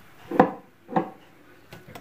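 Wooden stirring stick knocking against a plastic mixing bowl while slime is being mixed: two sharp knocks about half a second apart, then a faint tap.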